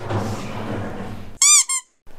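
A soft rustle, then near the end two quick, loud squeaks that each rise and fall in pitch, like a squeaky-toy sound effect, cut off sharply.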